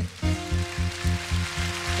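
Church band music with no voice: a held keyboard chord over a fast, steady low beat of about five pulses a second, with a hissing wash of noise on top.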